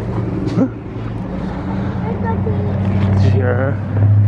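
A steady low hum that grows louder toward the end, under scattered short voices and a knock of the camera being handled about half a second in.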